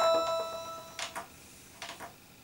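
Roland JD-XA synthesizer's bell-like arpeggiated notes dying away, followed by two pairs of short soft clicks from its front-panel controls.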